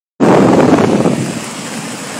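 Steady rushing noise of a tall waterfall in full spate, its flow swollen far beyond normal by spring floodwater, mixed with wind on the microphone. The rush is loudest for the first second and a half, then settles lower.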